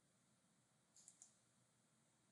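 Three quick clicks of a computer mouse about a second in, over near silence.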